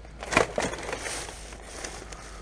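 Plastic rubbish bags and plastic sauce bottles crinkling and crunching as gloved hands rummage through them, loudest about half a second in.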